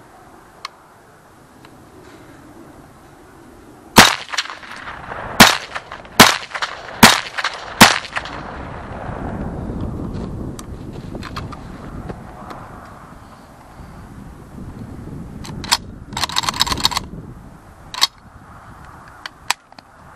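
Five shots from a Ruger Mini-14 semi-automatic rifle chambered in 5.56/.223, fired between about four and eight seconds in at uneven spacing of roughly a second. Later come a few quieter clicks and a short rattle about sixteen seconds in.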